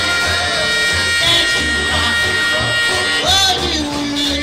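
Live doo-wop band music: singing over electric guitar and a pulsing bass line, with a voice sliding up to a high note about three seconds in.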